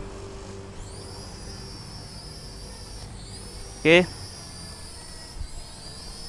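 Visuo Zen Mini quadcopter drone's propellers whining high as it lifts off. The pitch rises about a second in, then dips and recovers twice as the drone holds itself in the air.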